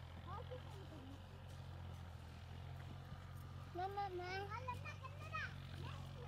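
Steady low drone of a tractor engine working in the field, with a high voice, a child's, calling out briefly about four seconds in.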